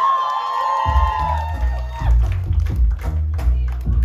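A live band starts a song: heavy low bass comes in just under a second in over the tail of a held high cheer from the crowd, and a steady drum beat joins from about two seconds in, with electric guitar.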